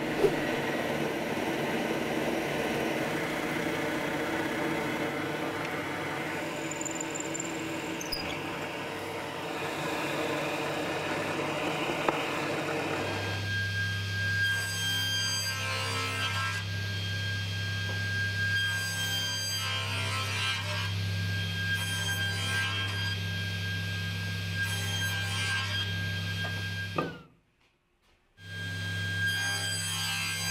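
A table saw running with a steady motor hum, making several cuts into a small hardwood block; each cut comes as a burst of sawing noise over the hum, and the sound stops abruptly near the end. For about the first half, a different steady machine noise is heard.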